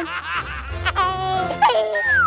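Laughter over background music.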